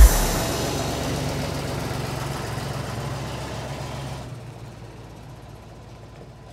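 A steady low rumble with hiss, engine-like, fading out over about four seconds as the loud electronic music cuts off at the start.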